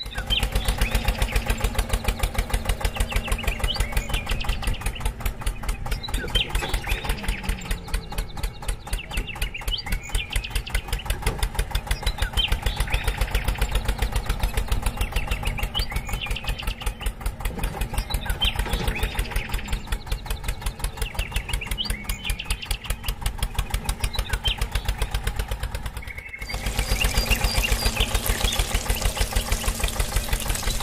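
Mini toy tractor running and driving a homemade juicer by a rubber-band belt: a steady, engine-like sound with a rapid, even pulse. It dips briefly about 26 seconds in and then carries on.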